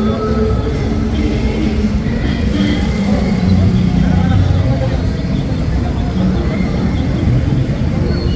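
Busy street noise: a road vehicle's engine running steadily under the voices of a crowd.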